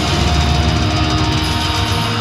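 Death metal band playing live: distorted electric guitars and bass over a drum kit, a loud, dense, unbroken wall of sound.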